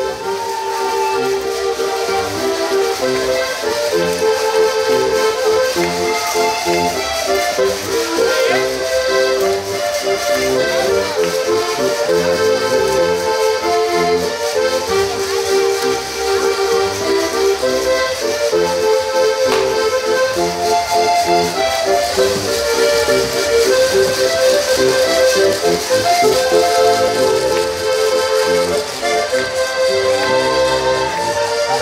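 Traditional Alpine folk tune played on diatonic button accordions: a continuous melody over a steady, regular bass rhythm.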